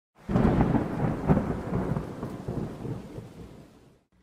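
A rumble with a few crackles that starts suddenly just after the opening and dies away over about four seconds.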